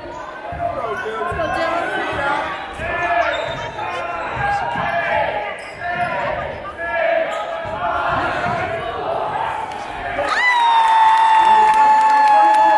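A basketball dribbling on a hardwood gym floor amid crowd chatter in a large, echoing hall. About ten seconds in, a loud, sustained tone starts and falls slightly in pitch.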